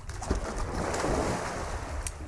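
A soft rushing noise, like a breeze buffeting the microphone, swells toward the middle and fades, over a steady low rumble.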